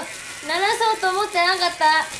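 A high-pitched voice in short bursts whose pitch slides up and down, over a faint crackling hiss.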